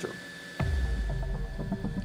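Background music: a deep bass pulse comes in about half a second in, under a thin steady high tone.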